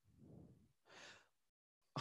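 Near silence with two faint breaths close to the microphone, the second, higher-sounding one about a second in.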